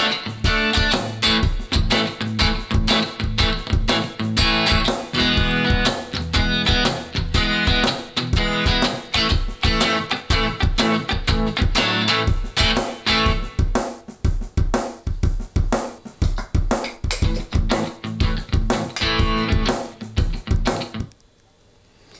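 Kramer electric guitar strumming straight chords over a drum loop with a shuffle feel; the playing and the beat stop about a second before the end.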